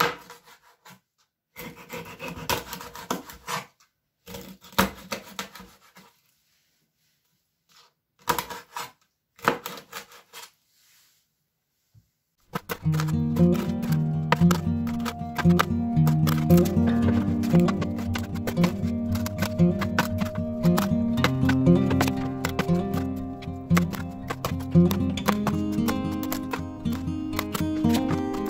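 Kitchen knife cutting roach into chunks on a plastic cutting board, heard as short bursts of cutting and knocking with silent gaps between. Background music with a steady bass beat takes over about halfway through and is the loudest sound.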